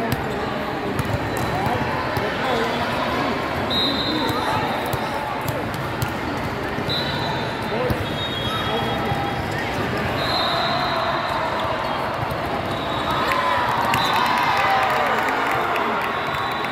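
Busy indoor volleyball hall: a din of many voices and shouts, with volleyballs smacking and bouncing on the courts. Short shrill whistles sound about five times through it.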